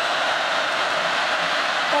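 Large stadium crowd noise, a steady hiss-like wash of many voices during a football play.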